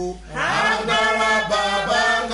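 Wordless worship chanting: long held sung notes over a steady low drone, with a brief break just after the start and then a voice sliding up into a sustained note.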